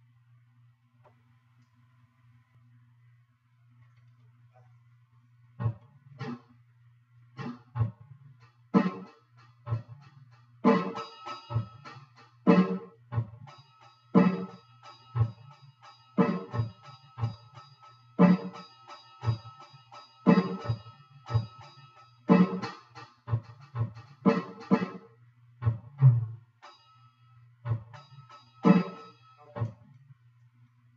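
Electronic drum kit being played through an amplifier: a few scattered hits start about five seconds in, then from about eleven seconds a steady beat of loud drum strikes with lighter hits between and a ringing cymbal tone. A steady low electrical hum runs underneath.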